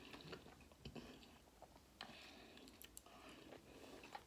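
Faint chewing and mouth sounds of someone eating lemon and lime wedges: a few soft, scattered clicks and smacks.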